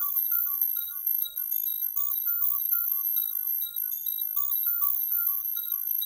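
Reason's Thor synthesizer playing an FM bell patch built from two FM-pair oscillators, with delay and chorus. A Matrix step sequencer plays it in a looping pattern of short, high, bell-like notes, about three a second.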